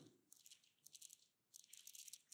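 Near silence, with faint, scattered crisp ticks of thin Bible pages being turned.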